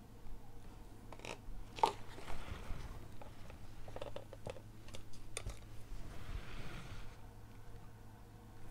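Small handling noises: a few light clicks and knocks as plastic paint cups and tools are picked up and set down, the sharpest with a brief ring about two seconds in, with soft rustling between.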